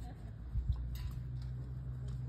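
Wind rumbling on the microphone, with a few faint clicks about half a second to a second in.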